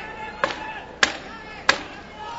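Three sharp knocks, about two-thirds of a second apart, over a faint murmur of voices: the ten-second warning signalling the end of the round is near.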